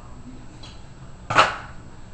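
One short, sharp noise about one and a half seconds in, from cloth hockey tape being worked onto a paintball air tank, over faint room tone.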